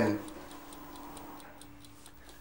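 Faint clock ticking at a steady, even rate over a low steady hum.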